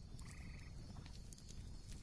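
Faint background ambience with a short, trilled animal call about a quarter second in.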